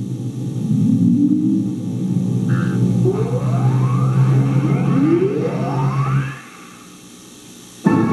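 Synthesizer music and electronic effects of a TV channel bumper: a low sustained drone with two rising pitch sweeps, then a sudden drop to a much quieter level about six seconds in. A loud music sting starts right at the end. The sound is boomy and buzzy from an old VHS recording.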